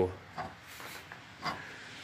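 Faint handling sounds from an antique hand-cranked post drill as its cast-iron flywheel and bevel gears are turned by hand, with two soft clicks, about half a second and a second and a half in.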